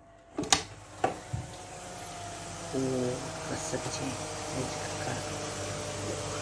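Electric oven door pulled open by its metal handle, with a sharp clack about half a second in and another about a second in, then the steady hum of the running oven with a roasting tray inside, growing louder about three seconds in.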